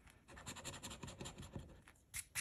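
A coin scratching the coating off a scratch-off lottery ticket in quick, light, quiet strokes. The strokes start about a quarter second in and stop just before the end.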